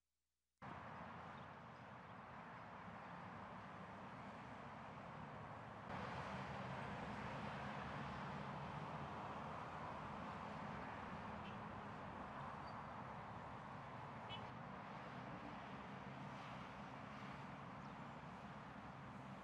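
Low, steady street traffic noise that starts abruptly a little over half a second in and grows somewhat louder about six seconds in, with a few faint short high chirps over it.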